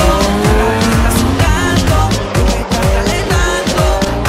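Car engines revving and tyres squealing as cars slide through tight turns, mixed over a music track with a heavy beat.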